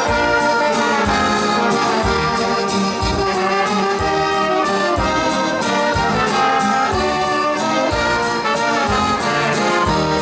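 Live dance band playing an instrumental passage: saxophone, trumpet and trombone carrying the tune over keyboard, with a steady beat.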